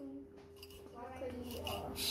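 Faint background talking from several people, over a steady hum.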